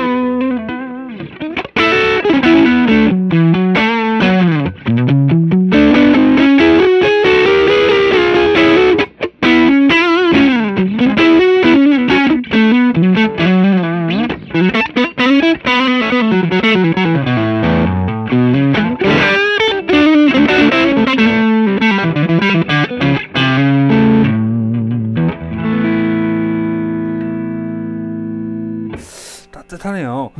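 Electric guitar, a Fender Stratocaster, played through a JAM Pedals TubeDreamer 808-style overdrive into a Fender '65 Twin Reverb amp, giving a distorted tone. It plays a single-note lead with string bends and vibrato, then lets a chord ring out and fade near the end before it is cut off sharply.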